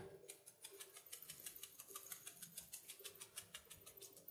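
Glass spice jar of ground red paprika being shaken over a pot: faint, rapid, even clicking, about seven a second, that stops near the end.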